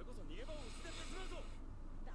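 Quiet anime dialogue: a voice-acted character speaking in Japanese from the episode playing in the background, over a low steady hum.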